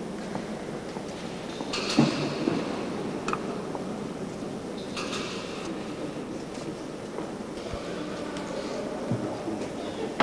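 Background noise of a large, echoing church hall, with a few scattered knocks and clinks, the loudest about two seconds in.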